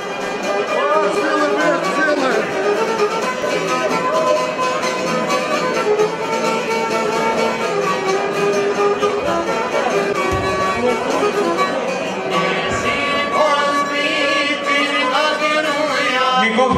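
Live Albanian folk music: a violin plays a busy melody over a long-necked lute, with no let-up.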